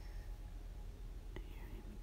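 Low, steady room hiss with a single faint click about a second and a half in.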